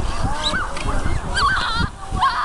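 Children's high-pitched, wavering shouts and squeals while sledding on saucer sleds, several short warbling calls in a row, over a low rumbling noise.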